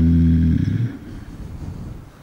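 A man's low voice holding the final syllable of a recited Qur'anic phrase as one long steady note, which trails off about half a second in. A quiet pause with faint room noise follows.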